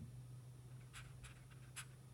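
Near silence with a steady low room hum, and three faint short clicks or scratches around the middle and near the end, the last one the loudest.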